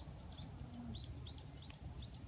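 A small bird chirping in the background: a string of short, high chirps, about four or five a second, over a faint low rumble.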